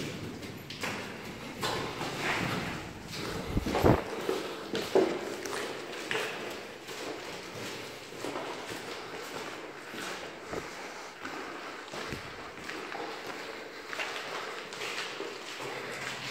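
Footsteps climbing concrete stairs: irregular steps and scuffs, with two louder thuds about four and five seconds in.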